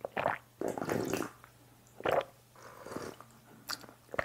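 Sipping spicy jjamppong broth straight from the bowl: about four short slurps and swallows with brief pauses between them.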